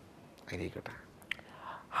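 A man's soft breaths and mouth noises in a pause between words, with a small lip click, ending in a quiet "uh" as he starts to speak again.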